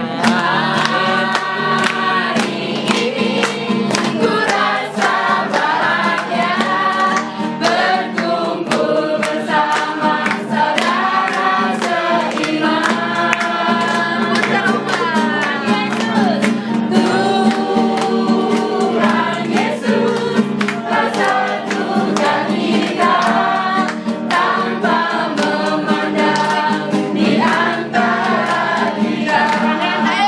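Several people singing a song together, men and women, to a strummed classical guitar keeping a steady rhythm.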